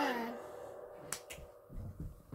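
A sung note trails off at the start, then two sharp clicks come a little after a second in, followed by soft low thumps near the end.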